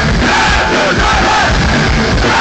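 Hardcore punk band playing live at full volume, with drums driving a steady beat, the crowd shouting along.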